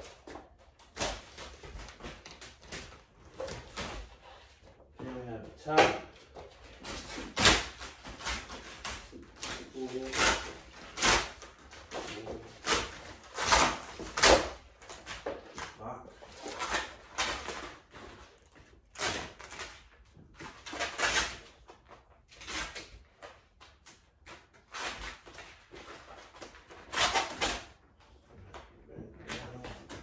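Car-wrap vinyl film being lifted, stretched and pressed by hand onto a car body: irregular crackling and rustling bursts of plastic film, some sharp, at uneven intervals.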